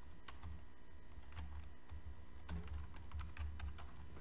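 Computer keyboard being typed on in short, scattered keystrokes, over a low hum.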